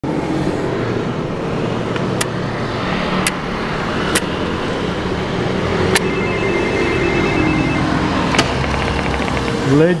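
Apartment entry intercom panel: several sharp button clicks as it is dialled, then its calling tone, a fast-pulsing two-note ring that lasts about two seconds and pulses again briefly a moment later. A low murmur runs underneath.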